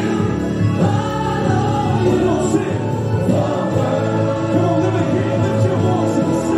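Gospel music with a choir singing, playing steadily throughout.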